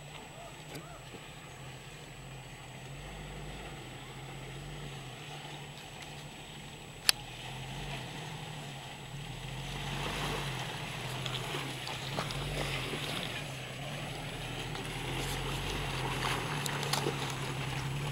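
A Jeep Wrangler YJ's engine running at low speed as it crawls through a deep, muddy water hole, with water sloshing and splashing around its tyres. The sound grows louder in the second half as the Jeep comes closer. There is one sharp click about seven seconds in.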